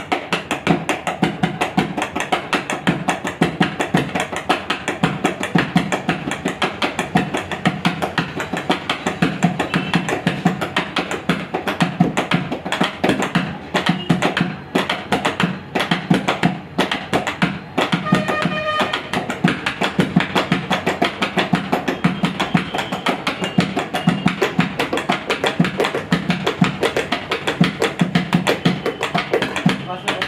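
Hands drumming a rhythm on a tabletop, knuckles and fingers striking the wood in a fast, steady pattern that keeps going throughout.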